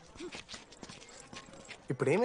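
Footsteps on hard ground: a quick, uneven run of sharp taps between lines of dialogue.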